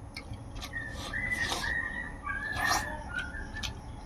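Close-miked mouth clicks and chewing while eating by hand, with a high, thin whistle-like whine that comes in about a second in, breaking and shifting slightly in pitch for about two seconds, alongside two short hissy bursts.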